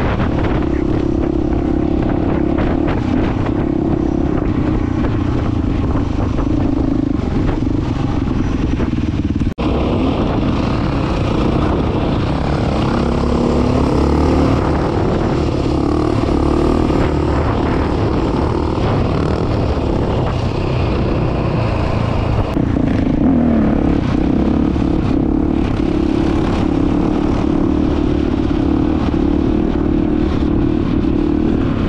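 KTM four-stroke dirt bike engine running loud and continuous while being ridden, its note rising and falling with the throttle. A very brief drop in the sound about ten seconds in.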